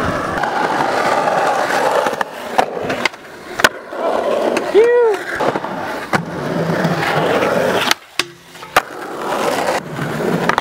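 Skateboard wheels rolling on concrete, broken by several sharp clacks of the board popping and landing, between two and four seconds in and again near eight seconds. About five seconds in comes a short rising-then-falling tone, like a brief voice call.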